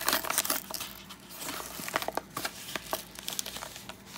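Yellow padded paper envelope crinkling and rustling in the hands as it is opened and a wrapped pack of cards is slid out, with irregular crackles that are thickest in the first second.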